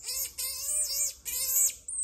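Marmoset calling: a run of about four short, quavering high-pitched calls in quick succession, with a thin high whistle near the end.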